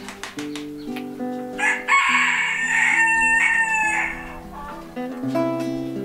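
A rooster crows once, one long call from about two to four seconds in, the loudest sound here. Under it an acoustic guitar is picked in slow, held chords.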